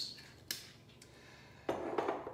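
A single sharp knock about half a second in as a glass sparkling-water bottle is handled and set down on a marble counter, followed near the end by more handling noise.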